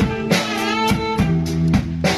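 Blues-jazz band music: sustained, wavering guitar lead notes with vibrato over bass and drums.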